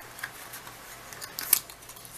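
Light clicks and handling noise from glass nail polish bottles being moved about, with one sharp click about one and a half seconds in.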